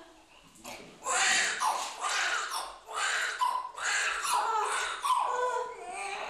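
Newborn baby crying its first cries just after birth: about five short wailing cries in a row, starting about a second in.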